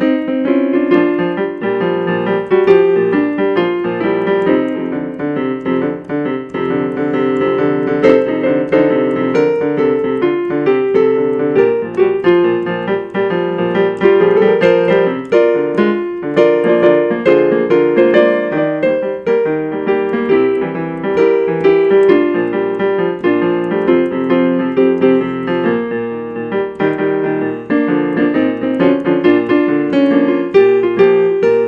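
Digital stage piano playing an upbeat tune with a shuffle feel, chords and melody together, without pause.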